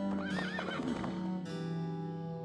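A horse whinnying: one wavering neigh of about a second that rises and falls in pitch, over held notes of background music.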